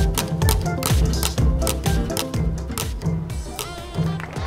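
A spinning prize wheel clicking as its pointer runs over the pegs. The clicks slow down as the wheel winds down, over background music.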